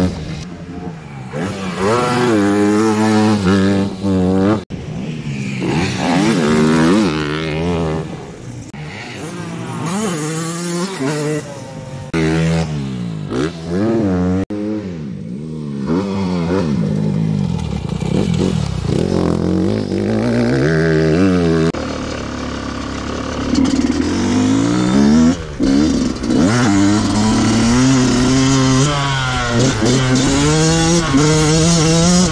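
Motocross dirt bike engines revving hard, the pitch climbing and dropping again and again as the riders accelerate, shift and back off around the track.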